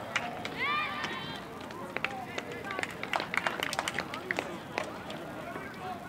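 Girls' soccer players calling out to one another on the field, with one high call about a second in. A quick flurry of short sharp clicks and knocks follows in the middle.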